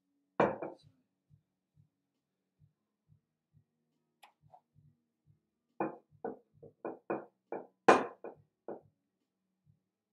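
Wooden rolling pin knocking on a floured worktop while dough is rolled out: one loud knock about half a second in, then a quick run of about ten knocks a few seconds later, the loudest near the end. A faint low pulse about twice a second runs underneath.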